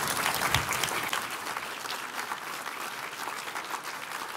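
Audience applauding, many hands clapping, easing off slightly toward the end. A brief low thump about half a second in.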